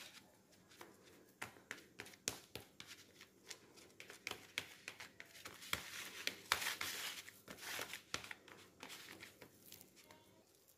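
Metal spoon mashing steamed sweet potato in a plastic bowl: many short clicks and scrapes of the spoon against the bowl, busiest and loudest from about six to eight seconds in.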